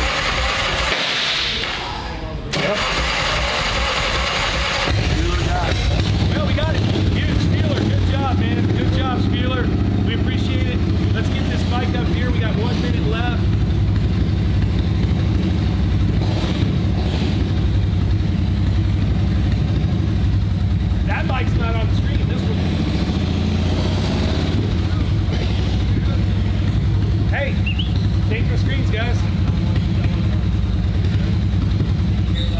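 A short burst of noise, then from about five seconds in a steady low drone that holds level, with faint voices under it.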